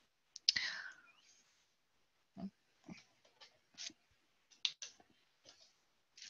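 A presenter's breath close to the microphone, then a scattering of about eight faint, irregular clicks and small mouth noises during a pause in speaking.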